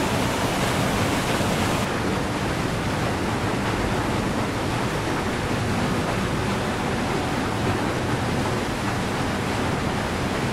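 Mountain stream rushing steadily through a narrow rock channel.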